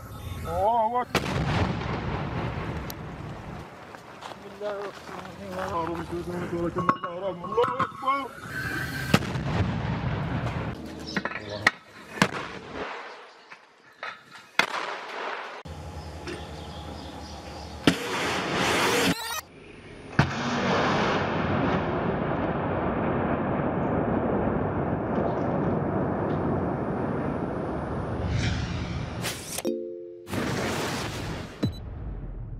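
Mortar being fired: sharp launch reports spread through the first twenty seconds, with men's voices calling out between them. A long steady rushing noise fills most of the last ten seconds.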